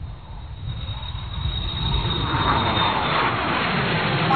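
Whoosh sound effect of an animated logo outro: a noisy rush that swells over two to three seconds, under a faint steady high tone.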